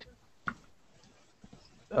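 A pause on a video call, near silence apart from one brief faint click about half a second in; a man's voice starts again at the very end.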